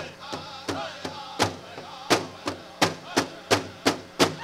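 Powwow drum struck in a steady beat, about three strokes a second, with the singers' voices over it for the first second or so before they stop and the drum carries on alone.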